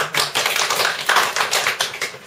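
Small audience clapping by hand, a dense patter of many claps that thins out near the end.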